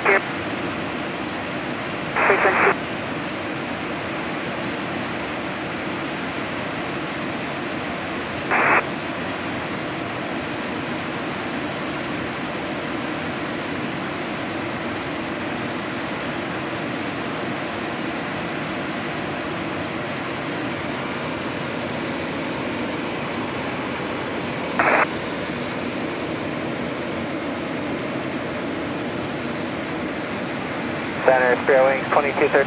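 Steady cockpit noise of a Pilatus PC-24 twin-turbofan jet in flight: a constant hiss of airflow and engines. Four short, thin bursts of radio audio cut in: at the very start, about two seconds in, near nine seconds and about twenty-five seconds in.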